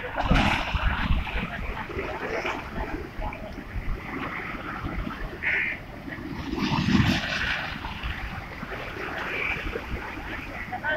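Choppy sea waves slapping and surging against a stone seawall, with wind buffeting the microphone. A heavier surge comes about seven seconds in.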